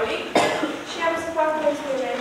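A girl speaking into a microphone, with one short, sharp noise about a third of a second in.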